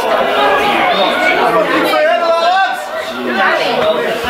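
Several people talking and calling out over one another, the words indistinct: the voices of spectators and players around a football pitch.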